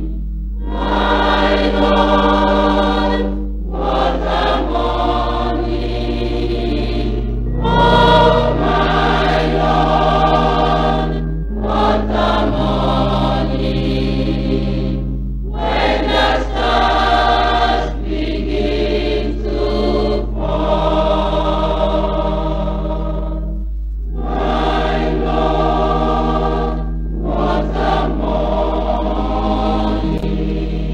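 A choir singing a gospel hymn in phrases a few seconds long, with short breaths between them, over sustained low accompaniment notes and a steady low hum.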